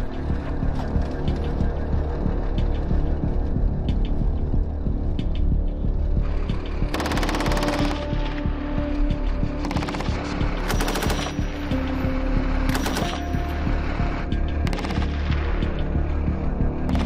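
Three bursts of rapid automatic gunfire in the second half, over a continuous low hum and background music.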